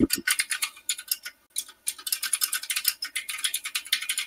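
Quick, irregular keystrokes on a computer keyboard, several a second with short pauses between runs, as a line of code is typed.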